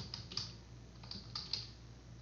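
Computer keyboard typing: a run of quick, faint keystrokes spelling out a word.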